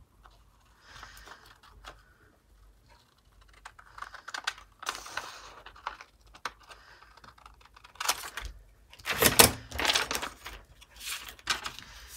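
Scissors cutting through thin translucent paper, soft snips in the first half, then a run of louder clicks and paper rustles in the last few seconds as the paper is handled.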